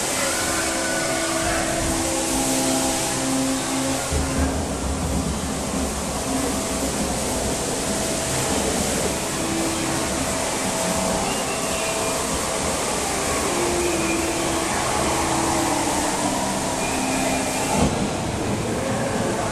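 Dark boat-ride ambience: a steady rush of water noise with slow music of long held notes that change every second or two.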